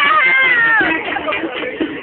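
A high-pitched voice lets out a long falling cry lasting almost a second, followed by a jumble of crowd voices.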